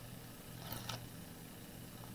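Faint rustle of double-sided foam tape strips and their paper backing being handled, with a brief crinkle just under a second in, over a low steady hum.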